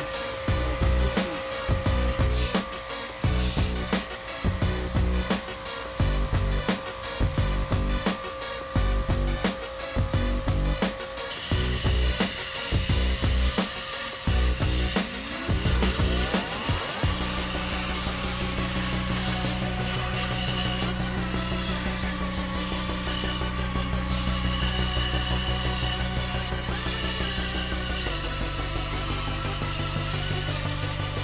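Pressure washer jet spraying water onto a split air-conditioner's aluminium evaporator coil and plastic casing, a steady hiss, under background music. The music has a steady beat for the first half and held low chords after.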